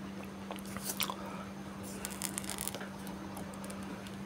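Faint crackles and clicks of a just-removed Oppo A53 phone battery being handled, over a steady low hum.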